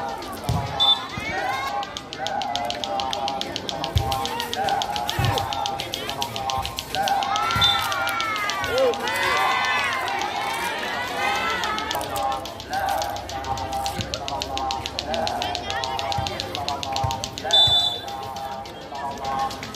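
Volleyball match sounds: a few sharp thuds of the ball being struck, brief high whistle blasts, and spectators shouting and cheering, swelling in the middle as a rally ends.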